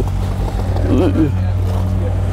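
Ram Power Wagon pickup's HEMI V8 engine running steadily at idle, a low even hum. A faint voice is heard about a second in.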